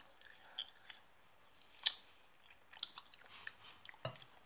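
A person chewing a bitten-off piece of Bar One chocolate bar. It is faint, with soft wet mouth clicks, one sharper click nearly two seconds in and a few more near the end.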